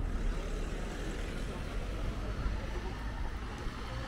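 Outdoor street ambience: a steady low rumble, from traffic or wind on the microphone, with faint voices of passers-by.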